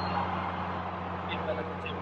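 Steady low hum of an idling vehicle engine, with a couple of faint short sounds in the second half.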